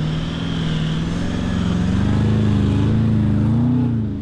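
A four-wheel drive's engine running steadily, its pitch rising slowly as the revs build, fading in and out.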